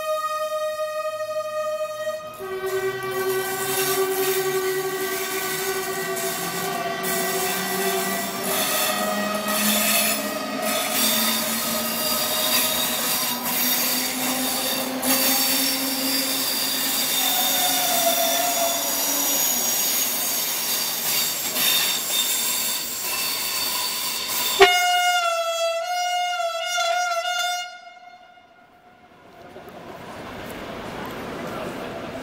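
NS Mat '64 electric multiple unit departing: a long horn blast, then wheels squealing with several high, shifting tones over the rumble of the running gear as the train moves off. A second wavering horn blast starts suddenly about three-quarters of the way in, and the sound then drops away.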